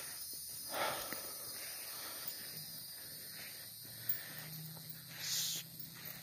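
Faint low drone of a distant car engine, coming in about two and a half seconds in and growing a little stronger about four seconds in, over a steady high hiss. Two short breathy hisses, one near the start and one near the end.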